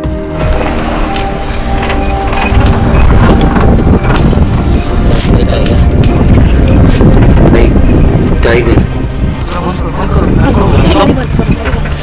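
Wind buffeting the camera microphone in a loud, rough rumble over the running of an open safari jeep. It cuts in suddenly as the background music stops.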